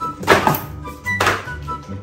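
Two thuds about a second apart, the first the louder, as books pulled off a shelf drop onto a wooden floor, over background music.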